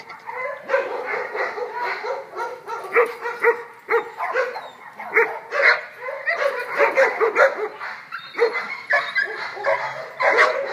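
Dogs barking and yipping excitedly in rapid, overlapping calls, several a second, as they play with a horse. There are short lulls about four and eight seconds in.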